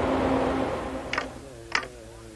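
A steady low electrical hum that fades down, followed by a couple of faint short clicks and soft wavering tones near the end.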